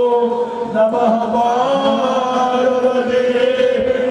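Hindu devotional chanting on long held notes; the pitch moves about a second in, then holds.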